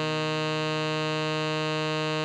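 Tenor saxophone holding one long steady note, written F4, which sounds as concert E-flat below middle C.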